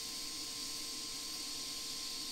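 Steady hiss of a DC TIG welding arc running at high amperage, around 175 amps, on thick steel, with a faint steady whine underneath.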